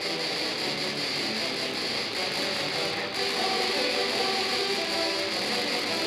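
Low brass quartet of euphoniums and tuba playing a metal-style piece through stage amplifiers, a dense, continuous wall of sustained notes.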